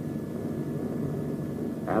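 Steady drone of aircraft engines, carried on an old film soundtrack with a faint hiss.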